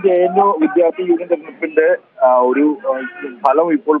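Speech only: a reporter talking in Malayalam over a telephone line, the voice thin and narrow, with a brief pause about two seconds in.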